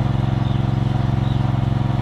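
A small engine idling steadily, with an even low drone and a fine, regular ticking.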